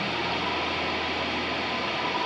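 A steady wash of static-like noise with no clear notes, part of a lo-fi recorded song.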